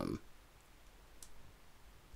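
A faint, short click from a small USB-C to micro-USB adapter being handled and pushed into the port of a follow-focus motor, about a second in, with one or two fainter ticks near the end.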